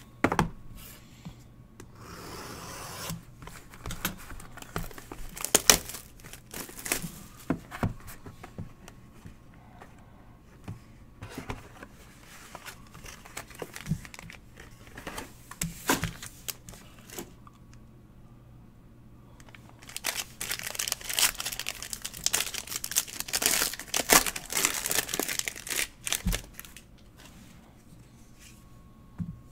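A sports card hobby box and its pack being opened by hand: plastic wrapping crinkling and tearing, with scattered sharp taps and knocks from handling the cardboard box and a long burst of crinkling in the last third.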